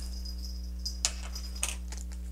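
A few faint clicks and crinkles as a small plastic zip bag of leftover printer hardware is picked up and handled, over a steady low hum.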